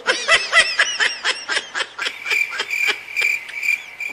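Rapid high-pitched laughter in quick bursts, about five a second, with a thin high tone pulsing along in the second half.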